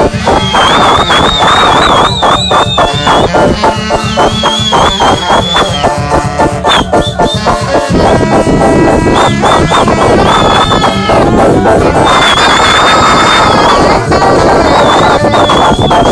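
Live band playing loud, continuous music with electric guitar and drums, recorded so close and loud that the sound is overloaded and distorted.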